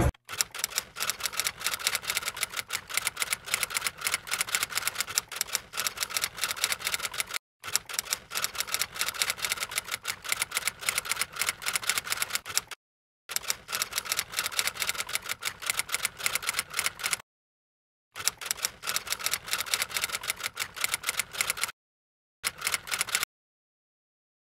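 Typewriter typing sound effect: a fast, continuous clatter of keystrokes in five runs, broken by short dead silences, stopping about a second before the end.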